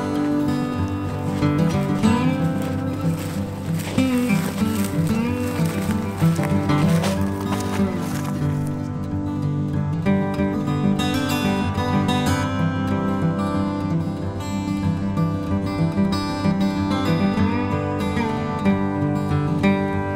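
Background music led by acoustic guitar, playing steadily.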